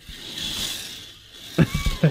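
K'nex roller coaster car rolling along the plastic track, an even rushing noise that swells and then fades over about a second. Laughter starts near the end.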